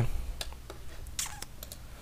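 About half a dozen short, sharp clicks from a computer mouse and keyboard, spread over two seconds above a faint steady low hum.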